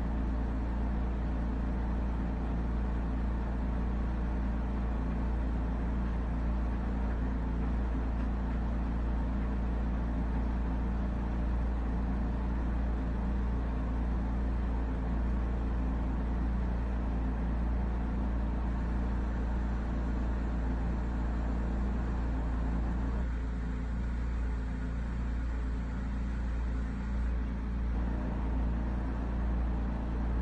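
A steady low mechanical hum over a deep rumble. The middle range thins a little about three quarters of the way in.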